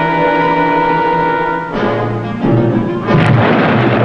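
Orchestral film score holding a tense sustained chord; about two seconds in, the explosion of a torpedo striking a ship breaks in and grows, loudest near the end, with the music still under it.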